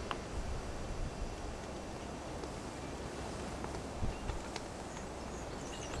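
Quiet outdoor rural ambience: a steady hiss of open-air background noise with a few faint ticks, about four seconds in.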